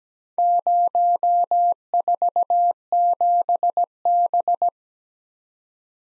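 Morse code sent as a single steady beep tone keyed on and off, spelling out the four characters 0, 4, 7, B in about four seconds: five dashes, then four dots and a dash, then two dashes and three dots, then a dash and three dots.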